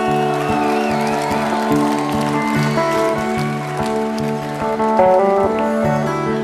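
Live band music: a fingerpicked electric guitar plays bending lead notes over a steady, repeating bass line.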